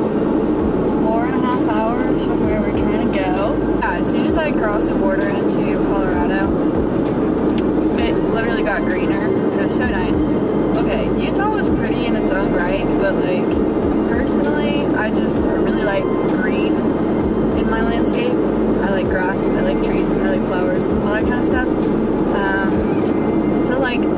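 Steady road and engine noise inside a moving car's cabin, under a woman talking.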